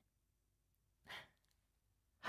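Near silence with a single soft breath from a man, a short exhale about a second in.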